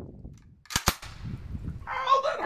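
Two sharp metallic clicks in quick succession, about three quarters of a second in, from handling a KP9 9mm AK-pattern carbine.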